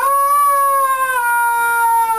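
Yellow rubber chicken being squeezed, letting out one long, loud scream that sags slightly in pitch.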